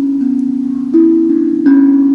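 Handpan (hang drum) played by hand in a slow melody: single struck steel notes, each ringing on and overlapping the next, with new notes about a second in and again near the end.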